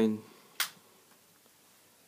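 The tail of a spoken word, then a single sharp click a little over half a second in.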